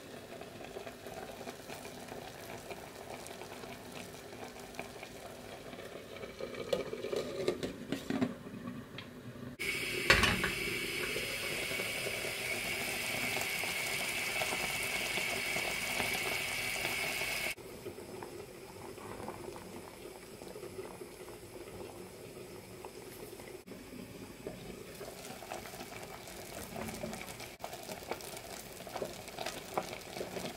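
Pork ribs and prunes simmering in a stainless steel pot, a steady bubbling. From about a third of the way in until just past the middle, a louder, brighter hiss takes over; it opens with a knock and cuts off suddenly.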